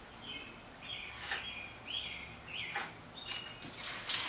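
Birds chirping, a series of short high calls every half second or so, with a few light clicks of something being handled close by.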